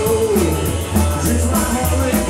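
Live rock and roll band playing: a sung vocal line over a walking double-bass line, electric guitar and a steady drum beat with cymbals.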